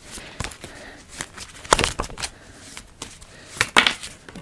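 A tarot deck being shuffled and handled by hand: a series of irregular light card clicks and flicks, loudest near the end as a card is drawn and laid down on the table.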